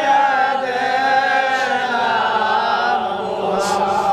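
Men's voices chanting a slow devotional melody together, with long held notes that waver gently in pitch.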